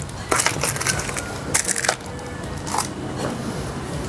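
Clear plastic eyeglass cases being handled and picked up, giving several sharp plastic clicks and knocks, with faint music underneath.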